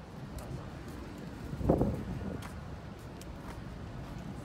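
Outdoor city ambience on a pedestrian walkway: a steady low rumble of distant traffic with scattered light footstep clicks. A short, louder sound comes just under two seconds in.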